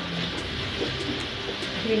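Hot oil sizzling in a frying pan, a steady hiss, with faint speech over it.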